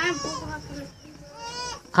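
A goat bleating in wavering, quavering calls, mixed with short spoken words.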